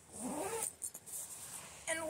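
A zipper being pulled along the lid of a mesh laundry bin to close it, an uneven zipping rasp.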